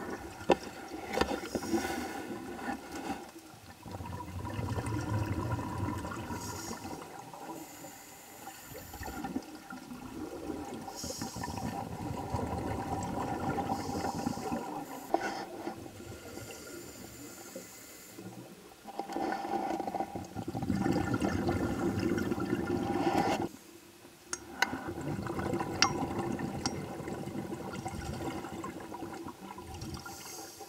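Scuba regulator breathing underwater: a hissing inhale, then a surge of bubbling exhaust, repeating every five or six seconds, with a few faint ticks near the end.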